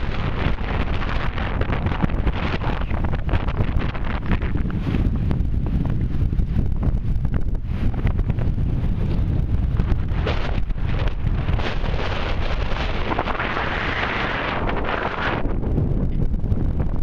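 Strong, gusty wind blowing across the microphone, a loud buffeting rumble that swells and eases with each gust.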